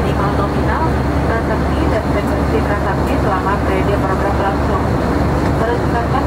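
Steady cabin noise of an Airbus A320 airliner in flight, a constant low hum of the engines and rushing air. Indistinct voices of passengers and crew sound over it.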